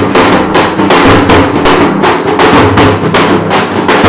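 Dafda (halgi) frame drums beaten with sticks by a group of drummers, a loud, fast, steady beat of about five strokes a second, with the drumheads ringing low beneath the strokes.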